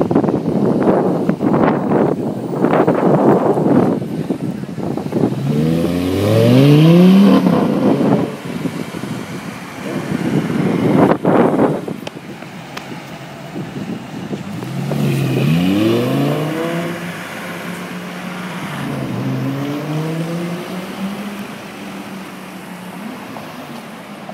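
Audi R8 Spyder's V10 accelerating hard, its engine note climbing steeply in pitch twice, about six and fifteen seconds in, then holding a steadier, lower drone. Wind buffets the microphone and traffic noise fills the first few seconds.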